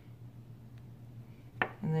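A low steady hum, a faint tick midway, then a sharp light clack as a plastic toothbrush, used to score the clay, is set down on the table.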